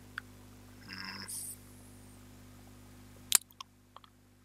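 Low steady electrical hum with a faint brief rustle about a second in, then one sharp click a little over three seconds in, after which the hum drops lower.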